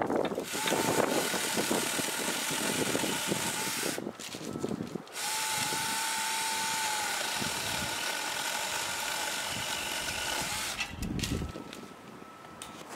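Battery-powered 24 V mini one-handed electric chainsaw running and cutting into a tree branch, with a steady motor whine in two runs of about four and six seconds and a short stop between them. A few low knocks come near the end after the saw stops.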